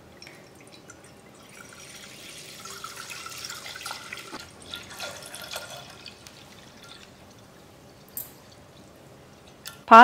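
Milk pouring in a thin stream into a stainless steel pot, a faint liquid splashing that swells a couple of seconds in and then fades away.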